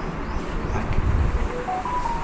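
A low rumble, then a simple electronic tune of three pure notes stepping up and back down, starting about one and a half seconds in.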